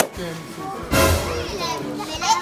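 Children's voices talking and exclaiming over background music, with a loud, noisy burst about a second in.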